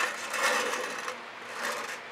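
A canvas on its backing board sliding and scraping across a work table as it is turned by hand, in a few rubbing swells.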